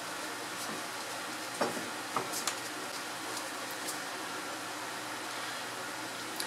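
Steady background hiss of a small room, like a ventilation fan, with a few faint small clicks in the first four seconds.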